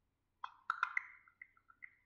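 ChatGPT voice-mode processing sound from a phone's speaker, a string of soft electronic ping and plop notes played while the app works on a reply. It starts about half a second in as a quick cluster of notes, then thins out to scattered single pings.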